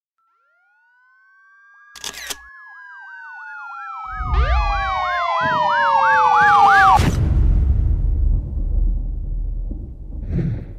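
Police siren sound effect: a wail fades in, then switches to a fast up-and-down yelp over a second, falling siren tone, and cuts off suddenly about seven seconds in. A brief crackle comes about two seconds in, and a low rumble runs under the second half.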